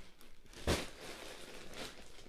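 A single brief knock about two-thirds of a second in, over faint room noise.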